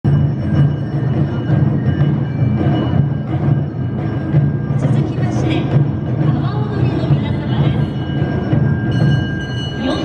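Awa odori festival music: deep taiko drums beating a continuous, driving rhythm, with high held notes from the band sounding over it.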